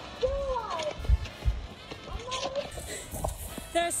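A woman's wordless vocal sounds, a few rising-and-falling calls, with low bumps on the microphone in the first half.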